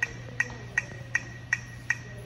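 Metronome clicking at a steady tempo of about 160 beats a minute, six short high-pitched ticks, over a low steady hum.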